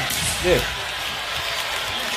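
Steady arena crowd noise from a basketball TV broadcast, with a man saying a short "yeah" about half a second in.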